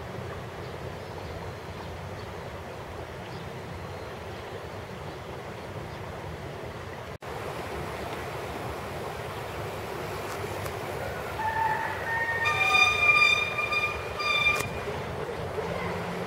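Steady outdoor background noise. Near the end comes a louder pitched sound of a few held notes, lasting about three seconds.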